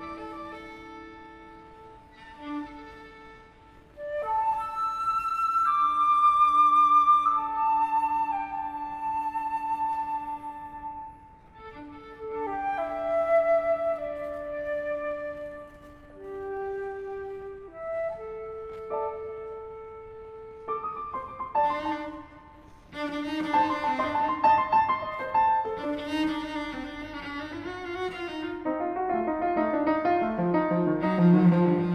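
Flute, cello and piano playing a slow contemporary classical piece: long held cello notes under a flute line, quiet at first, turning denser and louder with the piano in the last third.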